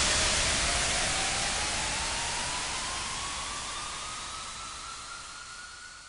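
Synthesized white-noise wash from an electronic dance track, fading slowly away after the beat stops, with a faint tone gliding steadily upward through it.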